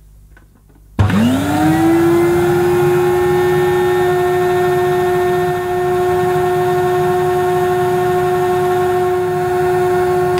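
Electrolux 305 cylinder vacuum cleaner's 700-watt motor switched on with a click about a second in, winding up fast to a steady whine. It runs with the hose end sealed by a suction gauge, pulling nearly 70 inches of water, which the owner calls good suction; the tone shifts slightly about four seconds in.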